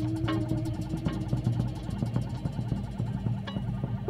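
Live improvised music from a bass-and-drums duo: a dense, low, rumbling drone with rapid, even ticking above it.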